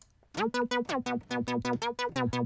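Ableton Analog software synth playing a quick run of short sawtooth notes from a keyboard, starting about a third of a second in. It is set monophonic, with detuned unison and glide, so the notes slide into pitch. A second sawtooth oscillator has just been switched on to thicken the sound.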